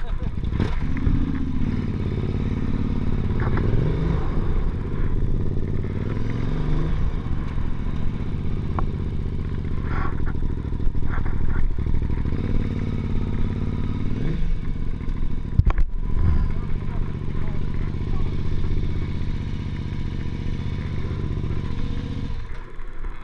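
KTM 950 Super Enduro's V-twin engine pulling away and riding on, the revs rising over the first few seconds and again about two-thirds through, with a brief dip in the sound shortly after.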